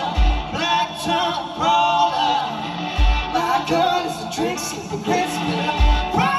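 Live music: male and female voices singing over a strummed metal-bodied resonator guitar, with a deep low thump about every three seconds.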